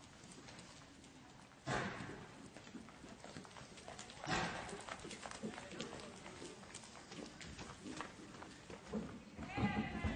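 A horse's hoofbeats on arena dirt as it lopes, a run of soft repeated thuds. Louder sudden noises come about two seconds in, about four seconds in, and near the end.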